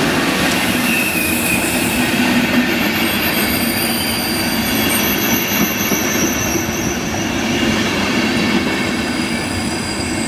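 PKP Intercity passenger coaches of an arriving train rolling past a platform with a steady rumble of wheels on rail. From about three seconds in, thin high-pitched squeals from the wheels ride over it.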